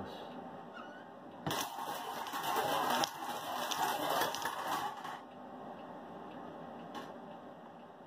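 Balls rattling and clattering inside a hand-cranked wire bingo cage as it is turned, for about four seconds, then one sharp click near the end.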